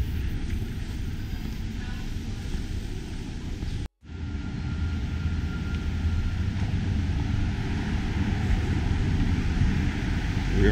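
Steady outdoor city-street ambience with a low rumble underneath. It drops to dead silence for a split second about four seconds in, at a cut between shots.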